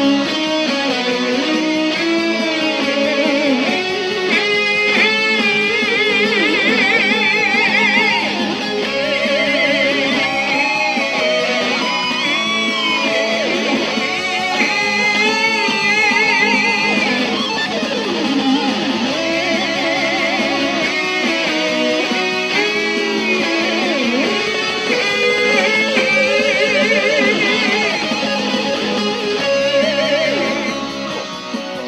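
Electric guitar playing a lead melody and phrases built off it, many held notes with a wide vibrato, alongside a sung melody repeated over and over.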